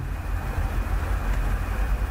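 Steady low rumble with a hiss over it: continuous background noise with no distinct events.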